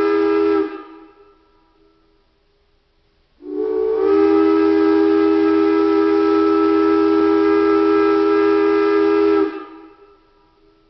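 Steam locomotive whistle sounding a chord of several tones: a blast that cuts off just under a second in, then after a pause of about three seconds a long blast of about six seconds whose pitch slides up briefly as it opens. Each blast fades out with a short echo.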